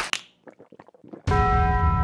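A bell-like chime hits suddenly a little over a second in, a cluster of ringing tones that slowly die away over a deep low boom.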